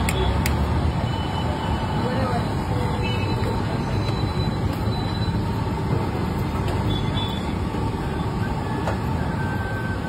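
Steady low rumble of street-side background noise with indistinct voices, and a light metallic clink about half a second in.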